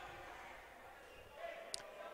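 Quiet sports-hall ambience during a stoppage in a handball game: faint distant voices, and one brief high-pitched squeak near the end.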